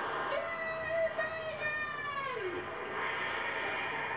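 Studio audience applauding and laughing, with one high, drawn-out 'aaah' held for about two seconds that slides down in pitch at the end.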